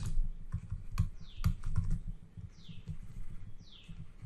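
Stylus tapping and scratching on a tablet screen during handwriting, a quick run of irregular clicks, with three short, high, falling whistles among them.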